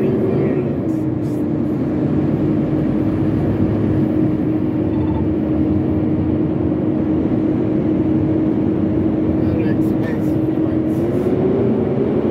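Steady road and engine noise inside a semi-truck cab at highway speed. A droning tone drops slightly in pitch about a second in and rises again near the end.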